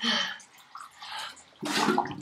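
Ice-cold water splashing and sloshing in a plastic bucket as a head is dunked into it, in two short bursts: one at the start and another about one and a half seconds in.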